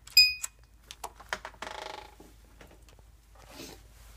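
Samsung SHS-5230 digital door lock giving a short electronic beep as it is unlocked from the inside, followed by a few mechanical clicks and a brief whir from the lock mechanism.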